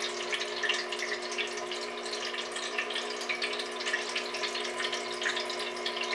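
Plastic tiered party fountain running: water trickling and splashing down through its tiers into the bowl, over the steady hum of its small electric pump.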